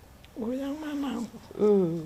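A woman's voice in two drawn-out vocal sounds, the second shorter and louder near the end.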